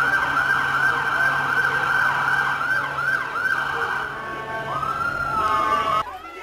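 Emergency vehicle siren sounding a fast yelp, about two sweeps a second, that changes near the end into a slower rising-and-falling wail.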